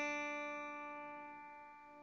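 A single open first string of an acoustic guitar, tuned to D, ringing out after one pluck and slowly fading.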